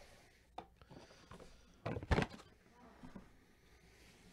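Gloved hands handling a cardboard case and foil-wrapped trading-card packs: scattered soft knocks and rustles, with a louder thump about two seconds in.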